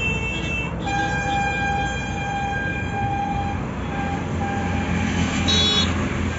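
A horn sounding one long, steady note for about four and a half seconds over the low rumble of bridge traffic, followed near the end by a brief, higher-pitched tone.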